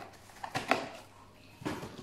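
Cardboard firecracker boxes being handled inside a cardboard carton: two short bursts of rustling and knocking, about half a second and a second and a half in.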